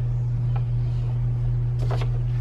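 A steady low hum, with a few faint rustles of paper being handled.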